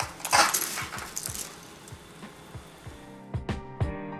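A pot of water at a rolling boil, its bubbling and hiss loudest in the first second as a bundle of dry spaghetti is pushed down into it, then dying away. About three seconds in, background music with plucked notes begins.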